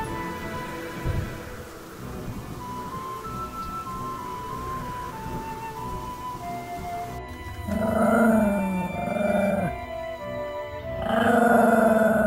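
Background music with a simple melody. About eight seconds in, a Pomeranian puppy gives two long howls over it, each about two seconds long, dropping in pitch at the end.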